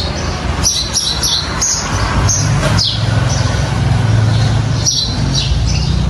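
Small birds chirping: a series of short, high chirps at irregular intervals over a steady low hum.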